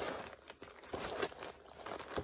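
Crinkling and rustling of a project bag as a cross-stitch piece is slipped back into it, in a run of irregular short crackles.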